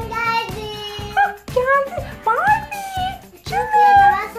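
Background music with a steady beat, about two beats a second, with children's voices over it.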